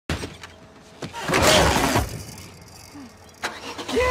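A car engine's low, steady running, with a loud rushing noise for about a second starting about a second in.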